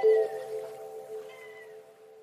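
Background music: a chord of held notes fading away, with a couple of short sliding high notes over it.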